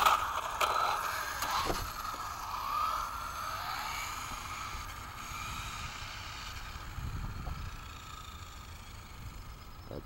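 RC buggy launching at full throttle on asphalt for a speed run: a sharp crack as it takes off, then a high motor whine that rises and wavers and slowly fades as the buggy pulls away.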